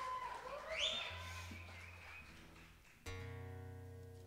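A live band's last held notes fade away. About three seconds in, a single guitar chord is strummed and left ringing.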